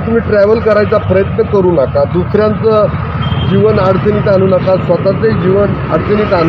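A man speaking Marathi continuously, with a steady hum of road traffic behind his voice.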